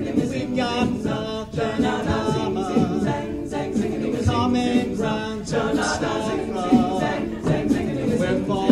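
An a cappella vocal group singing in harmony, with beatboxed percussion keeping a steady beat under the voices.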